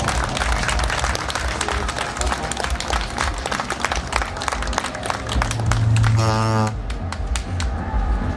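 Audience clapping and applauding for a solo acoustic guitar performer, thinning out toward the end. About six seconds in, a low hum swells briefly together with a short shout.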